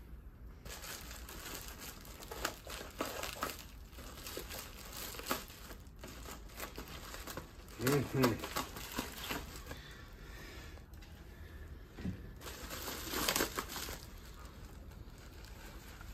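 A foil-lined insulated bubble bag crinkling and rustling in irregular bursts as it is snipped with scissors and pulled open by hand.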